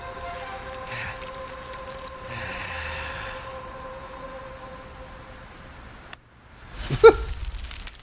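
Fight-animation soundtrack: a steady held drone with faint rushing noise, then a brief cut to silence and a sudden loud hit, with a short pitched cry or effect, about seven seconds in, as a punch lands.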